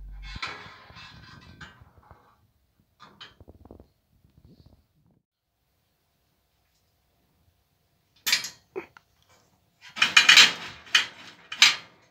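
Metal clattering and scraping from aluminium-profile frame parts and a linear bearing block on its rod being handled, in short uneven bursts. A few faint ticks come in the middle, and the loudest bursts come near the end.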